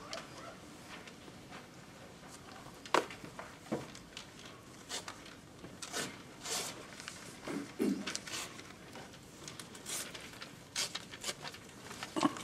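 Room tone in a quiet meeting room with scattered small knocks, clicks and rustles, as of people shifting in their seats and handling paper.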